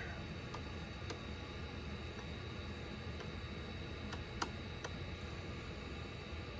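A few scattered light taps and clicks of a stylus on a pen-tablet computer's screen during handwriting, the clearest about four seconds in, over a steady faint low hum.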